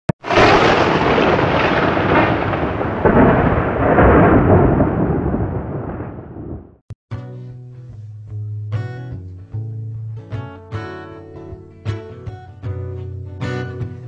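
A thunderclap sound effect: a sudden loud crack that rumbles and fades for about six and a half seconds before cutting off. Then strummed acoustic guitar music begins with a steady rhythm.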